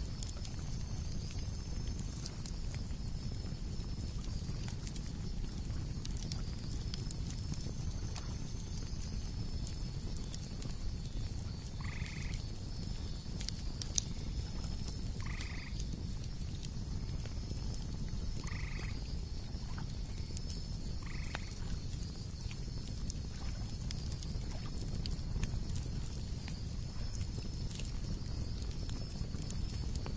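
Outdoor nature ambience: a steady low rumble under an even, high pulsing chirr, with four short animal calls about three seconds apart in the middle and a few faint clicks.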